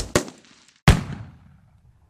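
Sharp impact sound effects of an animated title sting: two strikes in quick succession at the start and a third about a second in, each trailing off in a ringing, reverberant decay.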